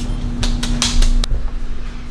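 Clothes dryer running: a steady motor hum over a low rumble, with a few sharp clicks in the first second and a bit.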